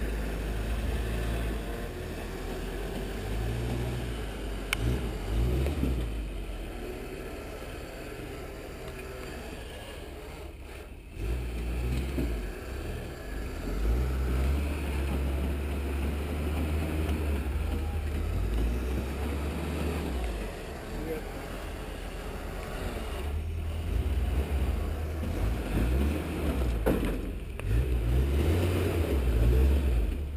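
Lifted off-road pickup truck's engine running and revving at low speed as it crawls over boulders, under a heavy low rumble that swells and drops.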